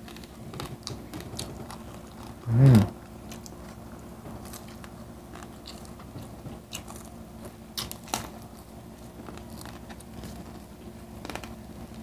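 Close-up eating sounds: biting and chewing crispy fried pork knuckle skin and fried tilapia, with scattered sharp crunches and wet mouth clicks. About two and a half seconds in, a short hummed "mm" rising in pitch stands out as the loudest sound.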